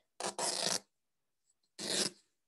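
A thin cotton bandana being torn by hand along its length: a half-second rip of fabric, a pause, then a second short rip near the end.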